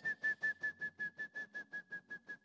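A shrill trilled whistle: one steady high note broken into about eight pulses a second.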